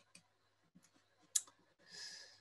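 A few faint, sharp computer-mouse clicks as the presentation slide is advanced, the loudest about a second and a half in, followed near the end by a short breathy hiss.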